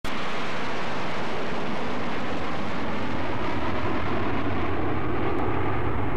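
A steady, loud rushing roar that starts abruptly at the very beginning, the sound effect laid under an aerospace network's logo intro.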